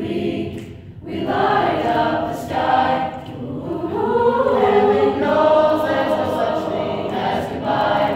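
Mixed choir of boys and girls singing together, with a short pause about a second in before the voices come back in full.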